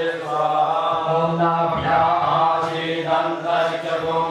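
A voice reciting Sanskrit mantras in a steady chant on a nearly level pitch, with only brief pauses for breath.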